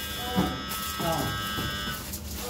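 A steady electric buzz made of several high tones, with faint voices underneath; it stops abruptly at the end.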